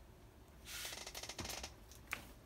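Handling noise: a hand shifting and turning a plastic-bodied LED flashlight, a rustle of about a second in the middle with small clicks in it.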